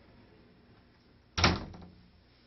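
A door shutting with a single sharp bang about one and a half seconds in, followed by a brief ringing tail.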